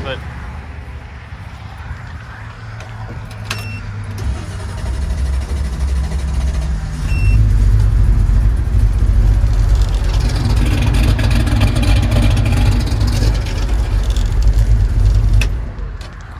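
Chevrolet C10 pickup's engine being run on a freshly replaced ignition coil to test whether the coil was the fault. Its low rumble grows about four seconds in, gets much louder from about halfway, and stops abruptly just before the end.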